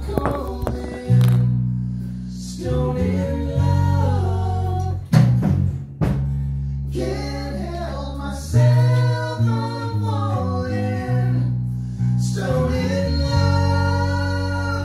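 Men's vocal group singing a song in close harmony after a count-in, a low bass part holding long notes beneath the higher voices in phrases a couple of seconds long.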